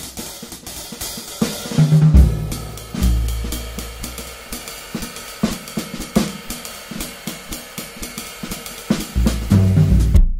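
Acoustic drum kit playing a groove, recorded with multiple microphones: busy hi-hat and cymbal strokes over snare and bass drum. A few deep, ringing low hits come about two seconds in and again near the end.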